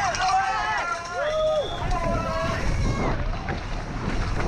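People shouting over wind rushing across a helmet-camera microphone as a downhill mountain bike speeds down a dirt trail. The shouts stop about three seconds in, leaving only the wind and trail noise.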